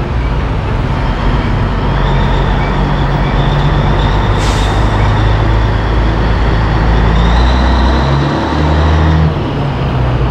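1984 Peterbilt 362 cabover's Caterpillar diesel engine running at low speed, heard close up. There is a short hiss about halfway through, and the engine note changes near the end.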